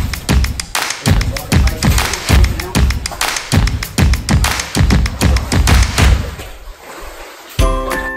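Background music with a steady drum beat, which drops away about six seconds in; a bell-like melody comes in near the end.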